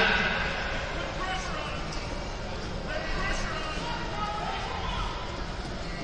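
Indistinct chatter of many voices in a large sports hall, with a few brief light thumps.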